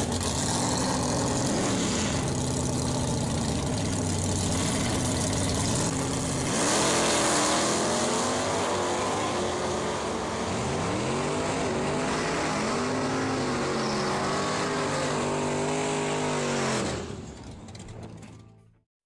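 V8 engines of two classic Plymouth drag cars revving, launching and accelerating down a drag strip. The engine pitch climbs and drops repeatedly through the gear changes, with a louder burst about seven seconds in. The sound fades as the cars pull away near the end.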